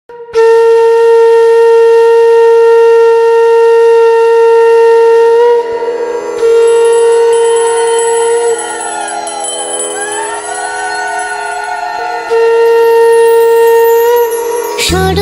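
Conch shell (shankh) blown in long, steady held notes, the loud note breaking off briefly a few times, with a softer stretch of wavering, sliding pitch in the middle.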